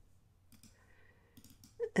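A few faint computer mouse clicks: a single click about half a second in, then a quick cluster about one and a half seconds in.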